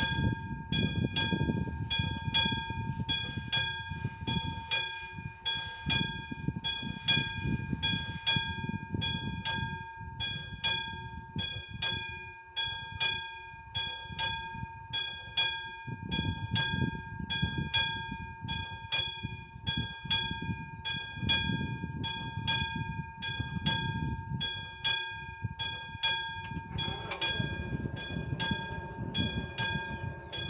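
Railway level-crossing warning bell ringing evenly at about two strikes a second, with gusty wind rumbling on the microphone. About 27 seconds in, the barrier drives start and the booms begin to lower, adding a mechanical hum under the bell.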